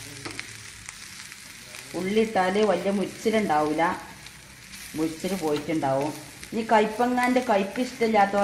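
Bitter gourd slices sizzling in hot oil in a wok while a wooden spatula stirs them. A voice talks over the frying in several stretches from about two seconds in, louder than the sizzle.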